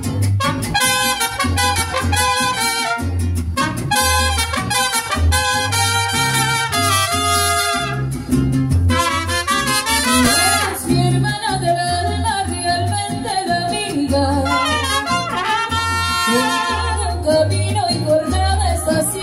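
Mariachi ensemble playing: trumpets carry the melody over strummed guitars and a guitarrón bass thumping on the beat.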